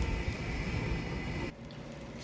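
Steady low kitchen background noise beside a gas range where a pot of beans is simmering. It drops abruptly to quieter room tone about one and a half seconds in.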